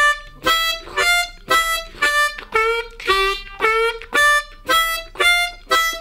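Diatonic harmonica in C playing a looped two-bar blues riff, one note per beat, about two notes a second: draw two, a half-step bent draw three, draw four, blow five, then back down. Some notes bend in pitch. The notes fall squarely on the beat, the plain version of the riff before any push and hold is applied.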